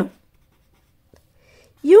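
Felt-tip marker writing on paper: a few faint short strokes in a pause between spoken words.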